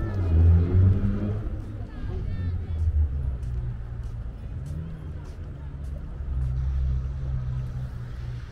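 Indistinct voices of people nearby, loudest in the first couple of seconds, over a low steady rumble.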